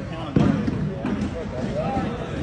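Background voices in a large indoor hall, with one dull thud about a third of a second in.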